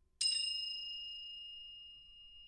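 Crotales struck fortissimo with hard plastic mallets: one sudden bright strike about a fifth of a second in, left to ring as a high bell-like tone that slowly fades.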